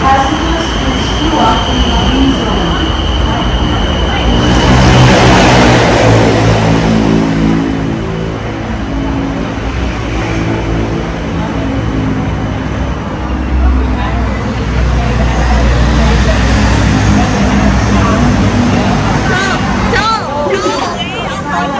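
A Bangkok BTS Skytrain train pulling into the station and braking to a stop. It passes with a loud rush of noise, and its electric motor whine falls in pitch as it slows, leaving a low rumble.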